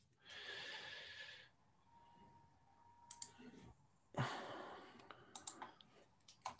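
Very quiet: two soft, breathy hisses, the second starting with a light thud and fading, and a few light clicks from a computer.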